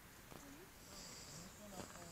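Faint, distant voices, a few short pitched snatches, over a very quiet background.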